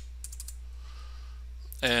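A quick run of keystrokes on a computer keyboard in the first half second, entering a number into a spreadsheet cell, over a steady low hum. A short spoken word follows near the end.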